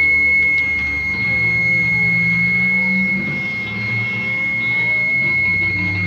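Live late-1960s German psychedelic/progressive rock improvisation. A single high, steady tone is held over sustained low notes, while several pitches bend down and back up in the middle.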